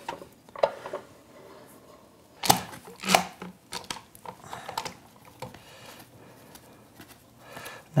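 Metal woodworking clamps being fitted and tightened on a glued-up wooden blank. A few sharp clicks and knocks of clamp parts against the wood and bench, the loudest about two and a half seconds in, with quieter handling noise in between.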